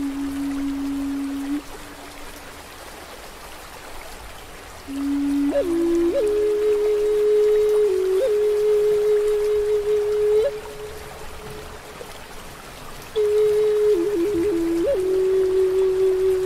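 Native American flute playing slow, long held notes in three phrases. The notes are decorated with quick grace-note flicks and a short trill, over a steady hiss of rain and flowing water. The first note ends about a second and a half in, the next phrase enters about five seconds in, and a third enters near thirteen seconds.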